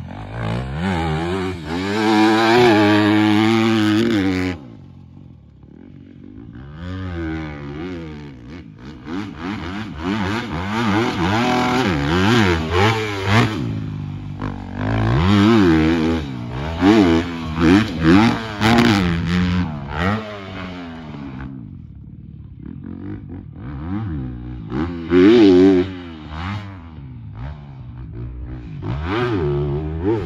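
Motocross dirt bike engine revving hard and backing off again and again as it is ridden around a motocross track. The sound drops away suddenly about four seconds in and builds back up, with a run of short, sharp revs in the second half.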